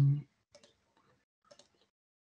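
A short voiced 'mm' in the first moment, then faint ticking of a wall clock, about one tick a second.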